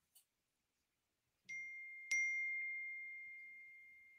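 A small bell-like chime struck twice at the same high pitch, the second strike harder, then ringing on and slowly fading away.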